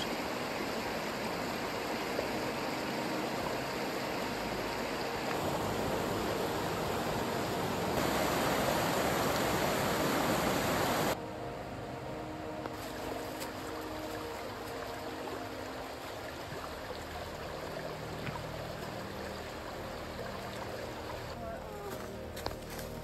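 Mountain creek rushing over rocks, a steady wash of water noise. It cuts off abruptly about eleven seconds in, leaving quieter outdoor ambience.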